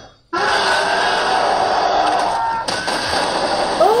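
Movie trailer soundtrack: after a brief drop to silence, a loud, dense wash of sound effects and score starts abruptly and holds, shifting about two-thirds of the way through.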